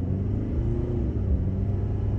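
2.8-litre Duramax four-cylinder turbodiesel of a GMC Canyon pulling hard from a standstill under full throttle, a steady low rumble as the truck accelerates.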